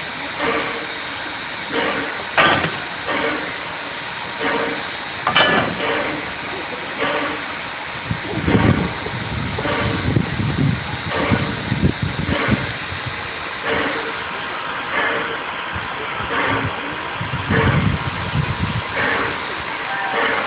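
Air-powered railway turntable turning a steam locomotive: a steady mechanical chuffing beat, about three beats every two seconds, with low rumbling swells partway through and near the end.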